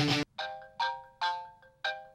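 Film music cuts off a quarter second in, and a mobile phone ringtone starts: a repeating melody of short, chime-like struck notes.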